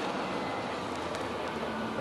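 Steady outdoor background noise: an even hiss and rumble with no distinct events.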